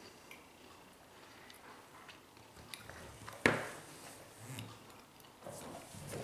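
Quiet chewing of a bite of frosted toaster pastry, with small wet mouth clicks. A single sharp knock sounds about three and a half seconds in.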